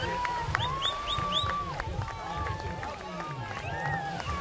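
Several spectators' voices calling out and cheering, one holding a long drawn-out call about half a second in, with a few short high rising chirps near the start. A low rumble of wind on the microphone runs underneath.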